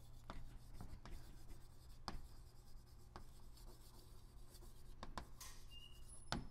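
Chalk writing on a blackboard: faint, irregular taps and scratches of the chalk strokes over a steady low room hum.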